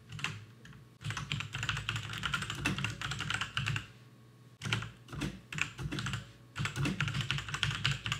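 Typing on a computer keyboard: quick runs of key clicks in bursts, with a short pause about four seconds in.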